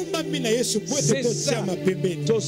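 Soft background music with held low notes that change once, about a second and a half in, and a man's voice running over it.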